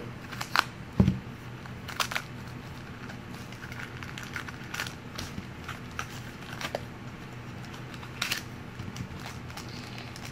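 Shopkins plastic blind basket being opened by hand: scattered clicks and crackles of the plastic packaging, with a low thump about a second in.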